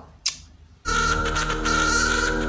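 A brief kissing smack, then the show's opening theme music cuts in suddenly just under a second in: a sustained chord of many held tones with a bright high tone above it.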